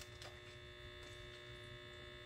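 Faint steady electrical hum made of several steady tones, with a light click right at the start.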